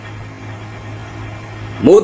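A steady low electrical hum, the recording's mains hum, heard through a pause in a man's talk; his voice starts again near the end.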